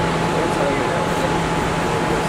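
Steady ambience outside an airport terminal: indistinct voices over a constant mechanical hum and rushing noise.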